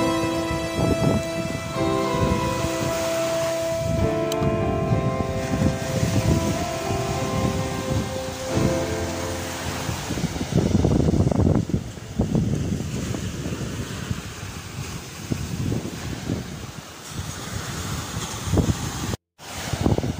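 Background music, fading out about halfway through, then small waves washing onto a sandy beach with wind on the microphone. The sound cuts out briefly just before the end.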